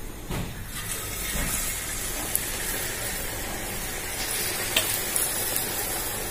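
Battered masala bondas (spiced potato balls in gram-flour batter) going into hot oil and sizzling steadily as they deep-fry, the sizzle starting about a third of a second in.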